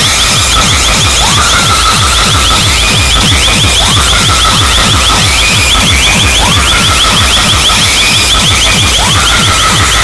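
Very loud, distorted DJ sound-system music from truck-mounted speaker stacks: a heavy bass beat with a siren-like rising tone that repeats about every two and a half seconds, and a rapid high ticking over it.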